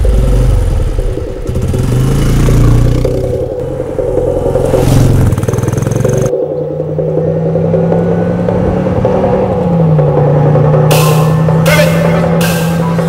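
Motorcycle engine revving and accelerating, its pitch rising and falling. About six seconds in the sound changes abruptly to a steady engine drone, which shifts slightly in pitch near ten seconds.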